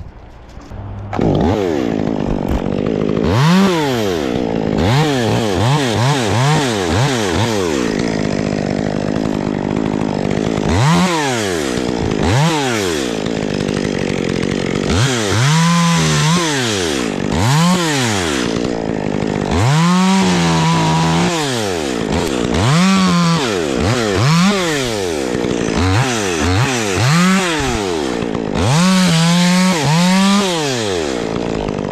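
Chainsaw revving up and dropping back over and over after a brief lull, with a few longer stretches held at full speed while it cuts into pine wood.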